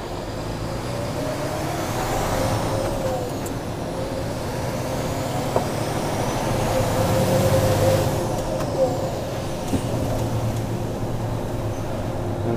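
Tipper lorry's diesel engine heard from inside the cab as the truck pulls away and drives on, the engine note building and then dropping back about eight seconds in.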